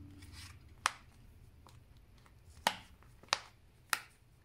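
A homemade pop-it of heat-formed plastic placemat clicking four times, irregularly spaced, as its moulded dome is pressed and pops through.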